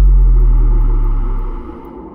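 Deep cinematic boom from an animated logo sting. It is loud at first and fades over about a second and a half into a softer low rumble.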